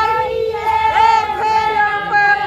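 A group of women wailing a drawn-out ritual mourning lament (the Haryanvi "hai hai" lament) in unison, holding long steady notes with small pitch slides.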